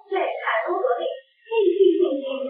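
A woman's high-pitched voice on an old archival soundtrack, thin and muffled, breaking off briefly a little after a second in and then going on.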